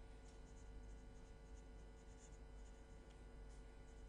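Faint scratching of a pen writing on paper in short, irregular strokes, over a low steady hum.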